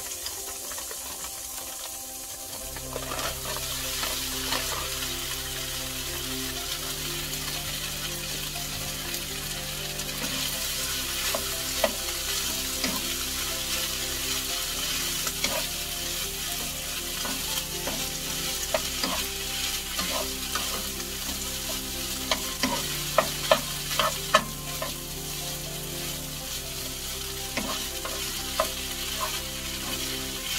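Frozen fried rice sizzling in melted butter in a nonstick frying pan. The sizzling picks up about two and a half seconds in as the rice goes into the pan, and a wooden spatula stirs and scrapes it. The spatula knocks sharply on the pan throughout, with a run of louder knocks a little past two-thirds of the way through.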